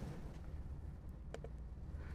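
Steady low room hum with a quick double click a little past halfway, a computer mouse button pressed and released.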